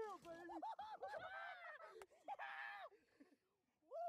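Faint men's voices calling out in excited shouts and whoops, with no clear words, while a bass is being landed. There is a single sharp click about two seconds in.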